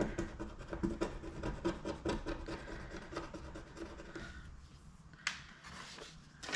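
A thin metal tool scraping the coating off a paper scratch-off card in quick strokes, about three or four a second, stopping about four seconds in. A single sharp click follows just after five seconds.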